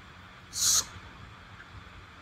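A man's single short hissing breath, like a sharp 's' through the teeth, about half a second in, against faint steady background noise.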